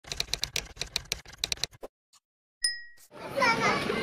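Typewriter sound effect: keys clacking rapidly for about two seconds, then a short pause and a single bell ding that rings out. Voices start near the end.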